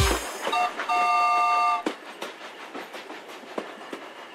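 Cartoon steam-train sound effects. A short hiss of steam comes first, then a train whistle blows for about a second, then the wheels clatter quietly along the track.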